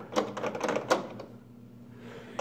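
Quick run of clicks and rattles from the plastic parts of a microwave control panel being handled and fitted, easing off after about a second.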